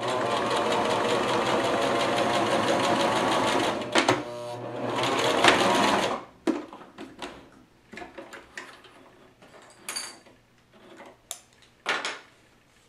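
Domestic electric sewing machine running a straight stitch at steady speed for about four seconds, pausing briefly, then stitching again for about two seconds and stopping. Light clicks and fabric handling follow, with one sharp click near the end.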